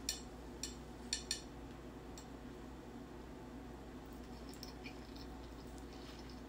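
A few faint, short mouth clicks from a person eating a forkful of rice in the first second and a half, then only a low steady room hum.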